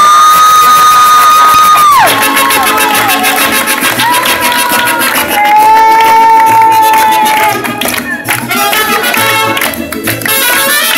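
A mariachi band of trumpets, violins and guitars playing loudly while a male singer belts long held high notes over it. The crowd cheers and claps along, the claps sharpest near the end.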